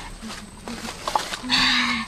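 Wordless vocal sounds from a boy: short grunts, then a loud, rough, drawn-out cry at a steady pitch in the last half second.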